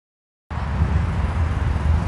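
Wind buffeting the microphone outdoors, a low uneven rumble that starts suddenly about half a second in.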